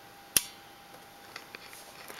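A single sharp click from the rocker power switch on the back of an ATX desktop power supply being flipped on, followed by a few faint ticks.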